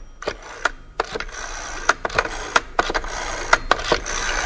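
A run of irregular sharp clicks and knocks, about three or four a second, over a steady hiss that grows louder about a second in.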